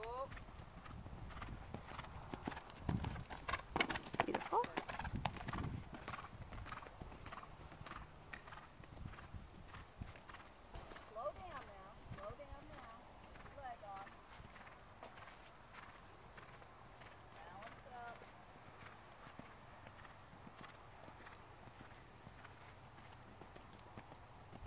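Hoofbeats of a horse cantering on sand, loudest in the first six seconds and fainter after.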